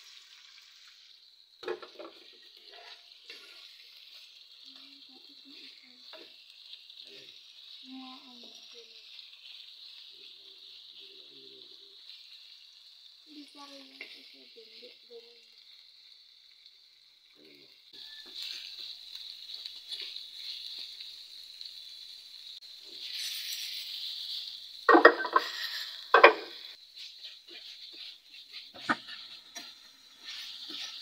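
Pork liver frying in hot oil in a nonstick pan, sizzling steadily while a metal spoon stirs and scrapes it. The sizzle grows louder about two-thirds of the way through, and two sharp knocks of the spoon on the pan come near the end.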